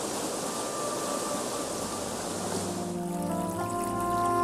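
Steady rush of water pouring over a ledge in a falling sheet, under soft background music whose held notes grow clearer near the end.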